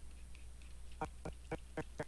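Choppy blips of the shot's dialogue track as the animation is scrubbed frame by frame, about four short fragments a second starting about halfway, over a low steady hum.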